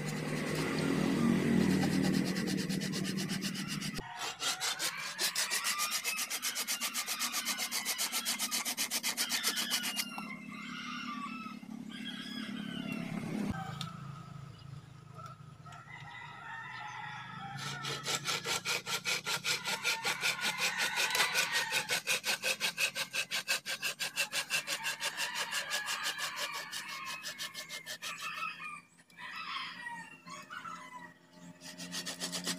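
A curved hand pruning saw cutting through a thick bougainvillea trunk in quick, even back-and-forth strokes. The sawing comes in two long runs with a pause between them, and a low rumble is heard in the first few seconds.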